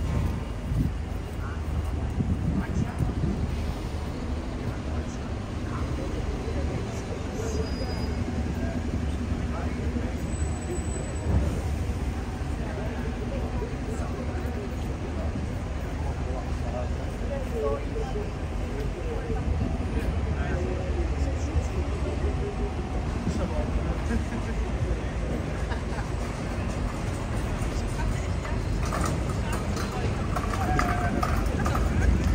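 Busy city street ambience: a steady low rumble of traffic with buses and cars going by, mixed with the voices of passers-by talking.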